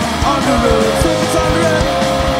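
Punk rock band playing live: electric guitars, bass and drums, with the drums hitting in a steady beat and a note held for over a second from about halfway in.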